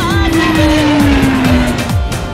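Fighter jet engine sound falling steadily in pitch over about two seconds, like a jet passing by, mixed over a song with a steady drum beat.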